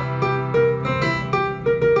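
Piano playing a held C major chord in the left hand with a right-hand melody of single notes moving over it, about half a dozen notes in two seconds.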